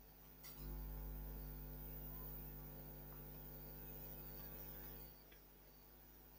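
Faint, steady electrical mains hum, a low buzz with a stack of even tones above it. It grows louder about half a second in and drops back about five seconds in.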